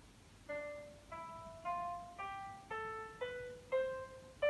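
Single piano notes played back by the music notation software as each note of a D harmonic minor scale is entered, seven notes about half a second apart. They climb step by step, with one drop to a lower note midway.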